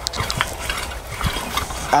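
Metal tines of a long-handled five-prong cultivator raking through loose, dug soil: an uneven run of scratchy scrapes and small clicks as grit and stones are dragged.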